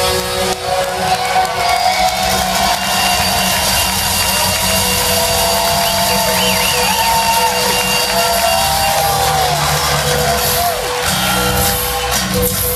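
A rock band playing live, recorded from far back in a large hall: a heavy, steady low end under a held note and a lead line that slides and bends in pitch.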